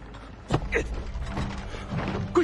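Shuffling steps, rustling and thuds as several people are forced down to kneel on the floor, starting about half a second in, over a low steady hum.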